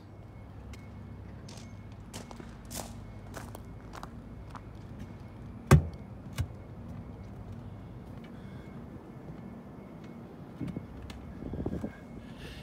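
Footsteps on a concrete walkway over a steady low background hum, with scattered light clicks. A sharp knock a little before the middle is the loudest sound, and a softer one follows about half a second later.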